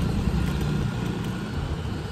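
Wind buffeting the microphone of a camera riding along on a moving bicycle, a steady rushing noise with a heavy low rumble, together with the bicycle's tyres rolling on the paved road.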